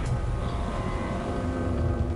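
A low, steady rumble with faint held musical notes above it.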